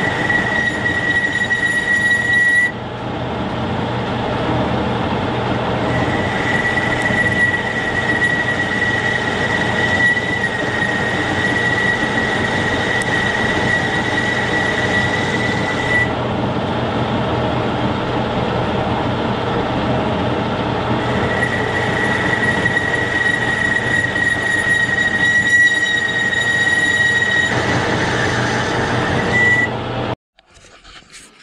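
Metal lathe running as it turns down a valve stem between centres. A steady high-pitched squeal from the cut comes and goes in three long spells over the lathe's running sound.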